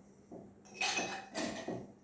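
Ice cubes clinking against glass as they are picked up with metal tongs and dropped into a highball glass: about three soft clinks in two seconds.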